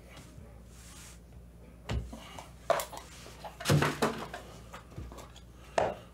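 Plastic card cases and a card box being handled and set down on a tabletop mat: a handful of short knocks and clicks spread over a few seconds, over a low steady hum.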